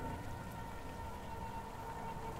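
Steady rain ambience, an even hiss, with a faint steady tone held underneath.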